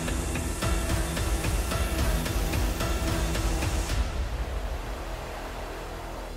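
Background music with a steady beat. About four seconds in, its treble drops away and it begins to fade.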